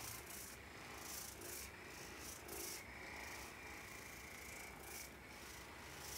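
Soft rubbing noises close to the microphone, a short stroke every half second to a second, over a faint steady room hum.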